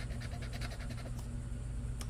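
A scratcher coin scraping the coating off a lottery scratch-off ticket in a quick run of short strokes, which stop a little past halfway through.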